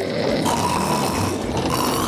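Loud, rasping cartoon snore from a sleeping character, one long rough breath filling the whole two seconds.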